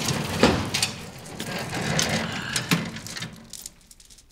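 A heavy coat rustling as it is pulled on, mixed with a run of clattering knocks.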